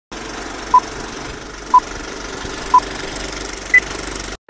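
Film-leader countdown effect: a steady film-projector clatter with crackle, and a short beep once a second. Three beeps share one pitch; the fourth, near the end, is higher.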